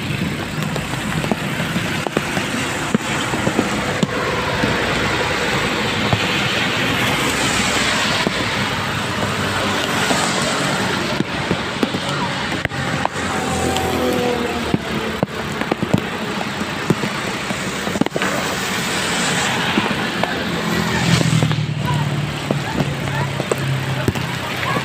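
Steady rain-and-water noise on a flooded road with traffic, broken by many sharp ticks and taps. A low hum comes in near the end.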